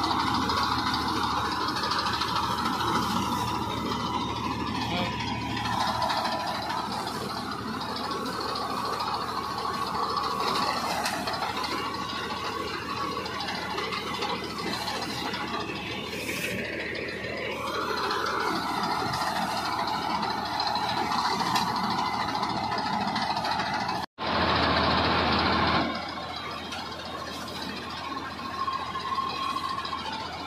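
Tractor engine running steadily under load as its mounted ATA Prime reaper cuts standing wheat. The noise breaks off suddenly about three-quarters of the way through and comes back louder for a couple of seconds.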